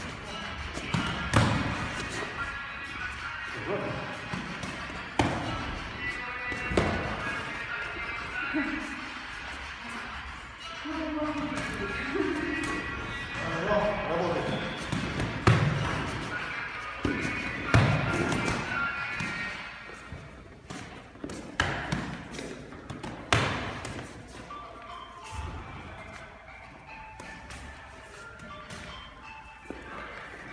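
Boxing gloves striking focus mitts: single sharp punches and short combinations, a few seconds apart and irregular in timing, over background music.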